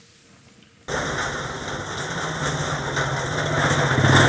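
A motor vehicle's engine running. It cuts in suddenly about a second in and its pitch rises slightly.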